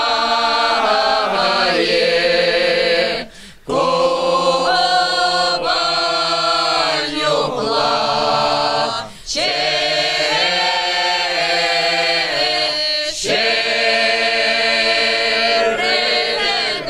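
A mixed folk choir of men's and women's voices sings unaccompanied in the Kuban Cossack style, in long held notes. The singing breaks off briefly for breath about three and a half and nine seconds in.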